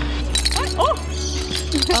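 Clinking rattle of a hard plastic ball toy, starting about a third of a second in, as it is held to a blue-and-gold macaw's beak. Background music plays under it.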